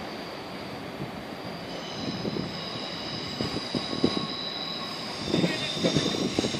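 NS ICM 3/4 electric multiple unit pulling away and receding over the station tracks: a low rumble with irregular low thumps, joined about two seconds in by several steady high-pitched tones that hold to the end.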